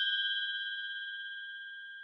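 A bell-like ding sound effect ringing out: a clear high tone with a few higher overtones, fading steadily and cut off suddenly at the end.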